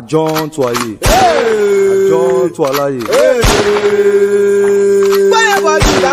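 A man's voice chanting in calls: short calls at first, then two long, high, held cries. Each cry follows a sharp thump, and a third thump comes near the end.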